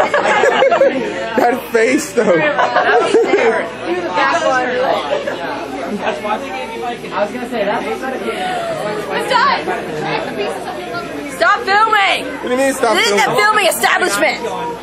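Several people chattering and talking over one another in a crowded room.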